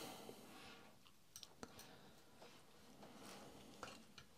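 Near silence with a few faint clicks as the metal probe of a CRT discharge tool is worked under the picture tube's anode cup. No spark snaps: the tube is already discharged.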